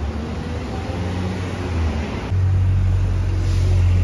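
Outdoor city-street background noise: a low, steady rumble that becomes louder about halfway through.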